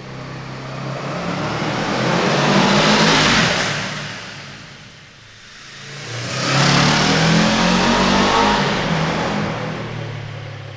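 Honda CL500's parallel-twin engine as the motorcycle rides past twice in a concrete tunnel. The first pass builds to its loudest about three seconds in and fades. The second comes in suddenly about six and a half seconds in and fades slowly.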